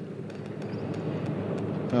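Steady, quiet outdoor background noise on a golf green while a putt is struck and rolls; the tap of the putter on the ball is faint at most.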